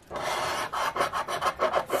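A coin scraping the scratch-off coating from a lottery ticket, a fast run of rasping back-and-forth strokes that starts just after the beginning.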